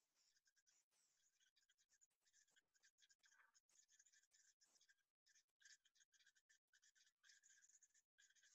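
Near silence: only a very faint hiss.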